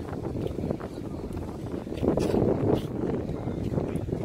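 Wind buffeting the camera microphone: an uneven low rumble that swells louder about two seconds in.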